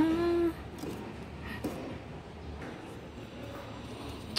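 A woman's word trails off at the start. Then quiet kitchen room tone with a faint steady low hum and one light knock about a second and a half in. The grinder is not running.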